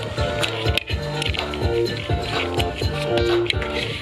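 Electronic music played live on a pad controller and synth: a steady drum-machine beat with held synth notes, with no singing.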